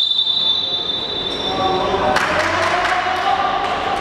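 A referee's whistle gives one long steady blast that stops about two seconds in, halting play. After it come players' voices, sneaker squeaks and ball bounces on the sports-hall floor.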